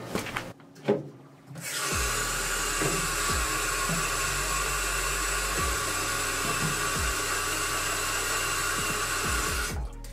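Tap water running from a sink faucet into a plastic jar. It starts about two seconds in, after a couple of knocks as the jar is brought under the tap, and shuts off suddenly near the end.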